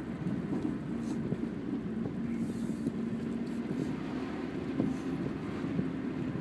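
Nissan car engine running at a steady pitch while driving in gear, heard from inside the cabin with road noise.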